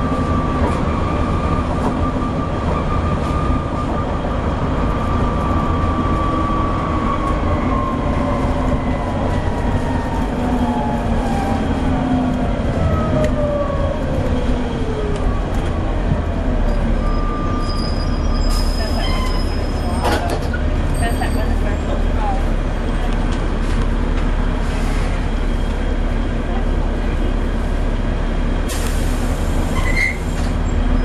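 Interior sound of a Volvo B7TL double-decker bus on the move: its six-cylinder diesel engine and driveline give a steady low rumble. Over the first half, a whine glides steadily down in pitch as the bus slows. Later come a few clicks and two short bursts of hiss.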